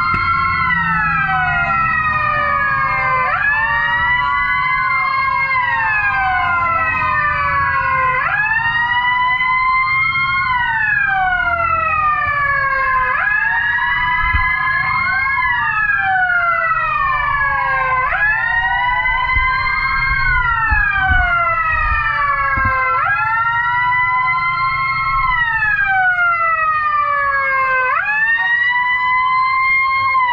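Several fire-rescue vehicle sirens wailing at once, out of step with each other: each one rises quickly and then falls slowly, restarting every few seconds. A low engine rumble runs beneath them.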